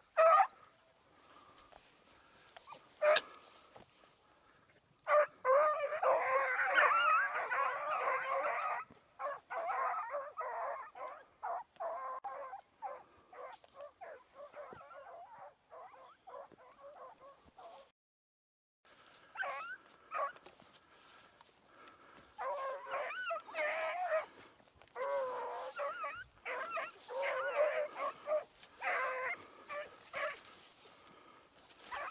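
A pack of dogs barking and yelping together as they run: a couple of sharp single barks at first, then several high yelping voices overlapping in bursts. The sound drops out for about a second just past halfway, then the chorus of yelps comes back.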